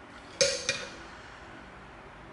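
Two sharp clinks about a third of a second apart, the first ringing briefly, as the contact cement can is opened and its brush dipped.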